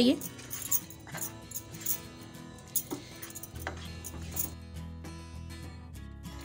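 Soft instrumental background music, with a few light clicks of a spatula against the pan as the thickened gravy is stirred.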